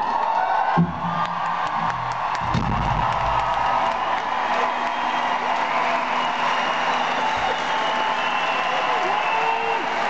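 A large concert crowd in an arena cheering steadily, with a few low notes from the band's instruments in the first few seconds.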